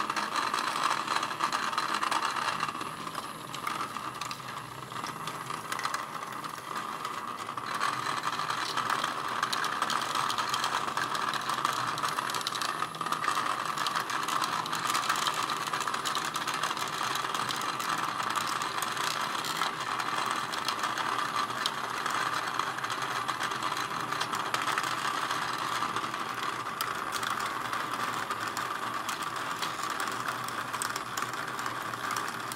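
Several HEXBUG Nano Nitro vibrating robot bugs buzzing and rattling as they skitter through plastic habitat tubes and plates: a steady, dense clatter that dips a little for a few seconds near the start.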